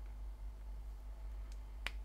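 A USB-C cable plug seating in the Samsung Galaxy S24's port, heard as one sharp click near the end with a faint tick just before it, over a low steady background hum.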